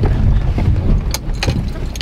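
Small car labouring up a steep gravel track, heard from inside the cabin: a heavy low rumble with a few sharp knocks from the rough surface, as the car struggles for grip on the climb.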